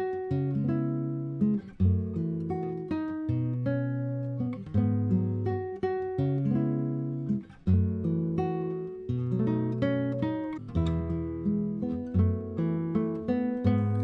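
Background music: an acoustic guitar plucking a steady, melodic run of notes.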